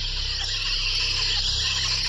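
Spooky sound effect for an animated logo ending: a steady hissing whoosh over a low rumble.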